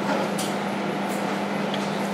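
Steady low room hum, with two faint short scrapes of oil paint being laid onto the canvas, about half a second and a second in.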